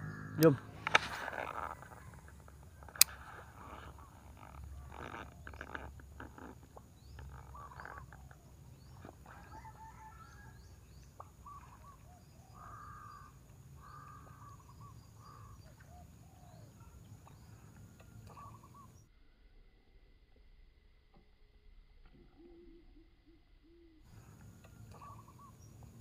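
Faint outdoor ambience with scattered short bird calls and a sharp click about three seconds in. The sound drops to near silence for several seconds past the middle.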